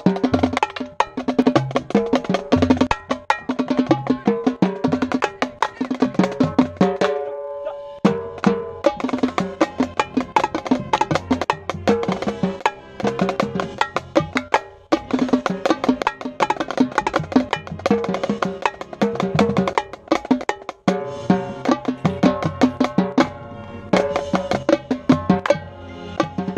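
Pearl Championship Series marching tenor drums, a set of six, played in fast runs of strikes around the differently pitched drums, with short pauses about seven, fifteen and twenty-one seconds in.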